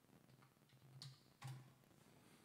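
Near silence: room tone with two faint short clicks, one about a second in and another half a second later.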